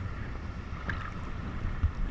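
Sea water lapping and sloshing around an action camera held at the water's surface, heard as a steady low rumble with a faint click about a second in.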